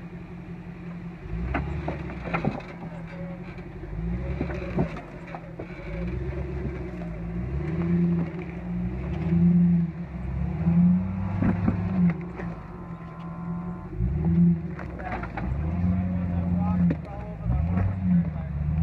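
Jeep Grand Cherokee engine revving up and dropping back in repeated bursts as it crawls over rocks, with scattered knocks and scrapes from the tyres and underside against the rock.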